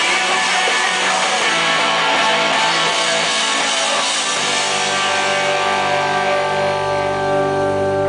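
Live rock band playing loud strummed electric guitars with drums and cymbals; about four seconds in, the busy strumming gives way to held notes that ring out steadily as the song winds down.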